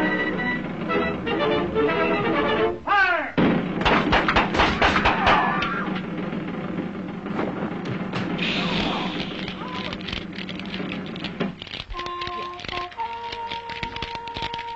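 Orchestral cartoon score with sound effects. About three seconds in, a quick falling slide leads into a couple of seconds of rapid cracks and crashes, then a rushing noise. Soft held notes come near the end.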